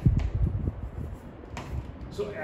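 A pen writing on a board: a few short scratchy strokes, with dull low bumps in the first second as the pen and board are handled.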